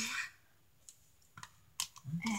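Three short clicks, spaced about half a second apart with the last the loudest, from a clear plastic Shopkins blister pack being handled.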